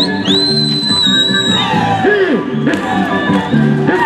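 Live Andean folk dance music with plucked strings playing a steady repeating figure. Near the start a shrill high cry rises and holds for over a second, and about halfway a shout falls in pitch.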